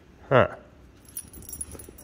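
A dog's metal chain collar and tags jingling lightly as the dog moves, a run of small clinks starting about a second in.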